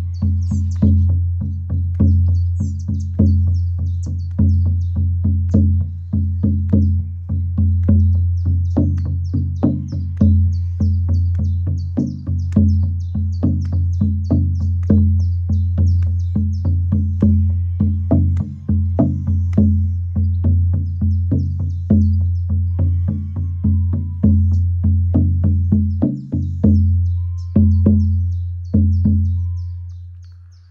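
An 18-inch deerskin shamanic frame drum on a willow frame, struck with a firm padded beater in a steady, fast beat. Its thick skin gives a deep, rich tone that rings on between strokes. Near the end the strokes slow and stop, and the drum rings out.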